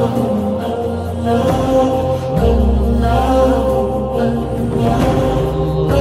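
Devotional music: sustained chanted voices over a held deep bass note, which grows stronger and lower about two and a half seconds in.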